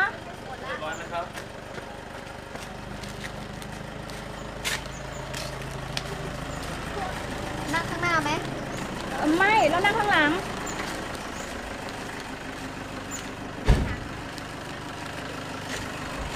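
Vehicle engine idling with a low, steady hum through most of the stretch, under a few short bursts of talk. One sharp thump near the end is the loudest sound.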